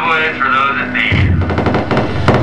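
Live electronic noise music from synthesizers and electronics: warbling pitched tones over a steady low hum for about a second, then a rapid stuttering train of sharp clicks over a low rumble.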